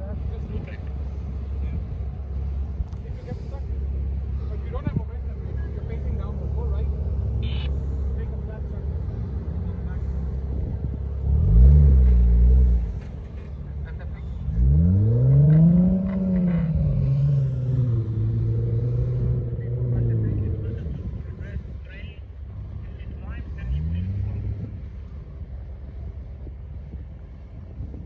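Jeep Wrangler engine working in soft dune sand. It runs at a low steady drone at first, then is revved hard: a short loud burst about halfway through, then a longer rev that climbs, peaks and eases back to a steady higher drone, and a brief rev near the end.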